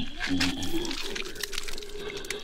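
A man's short, strained groan from the wounded masked slasher. A faint steady tone holds on beneath it from about a second in.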